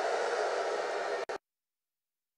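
A large rally crowd reacting, a steady wash of many voices, which cuts off suddenly to dead silence about one and a half seconds in.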